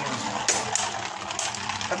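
Winning Valkyrie and Bloody Longinus Beyblade tops spinning on a sheet-metal stadium floor: a steady whirring scrape of their tips on the metal, with three sharp clinks in the first second and a half.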